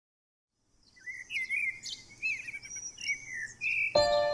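Birds chirping and whistling: a string of short sliding calls that begins about a second in.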